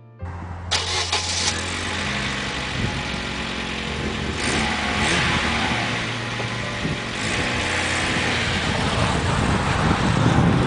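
Daewoo Lanos car engine starting with a short loud burst about a second in, then running steadily as the car drives off.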